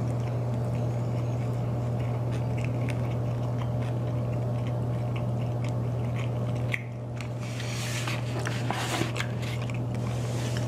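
A person chewing a sauced chicken wing, with small wet mouth clicks and smacks over a steady low hum. In the last three seconds there is louder rustling and smacking.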